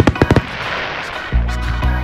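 Aerial fireworks going off: a quick cluster of sharp bangs, then a spell of crackling as a glittering shell burns out, with music playing underneath.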